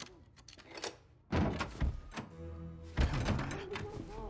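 Soundtrack of an animated series: tense music with two sudden heavy thuds, the first about a second in and the second near three seconds, with a muffled voice.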